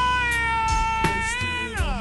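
Slowed-down R&B song: a high sung note is held steady, then slides down in pitch near the end, over the backing track's beat.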